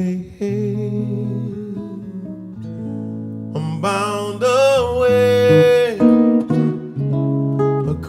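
Double-neck guitar playing a slow arrangement with low bass notes and chords. About halfway through, a man's voice joins with a long, wavering held note.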